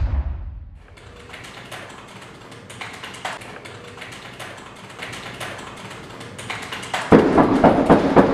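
Typing on a computer keyboard: many irregular keystroke clicks, getting louder and faster near the end. A booming sound is still fading away at the very start.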